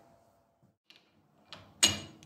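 Near silence, then near the end a small knock and a sharp metallic clack with a brief ring: a machined metal plate being set down on a lathe's cross slide.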